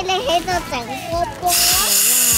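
Children's voices, then about one and a half seconds in a loud, steady hiss starts suddenly: helium gas rushing from a disposable helium tank's valve into a foil balloon.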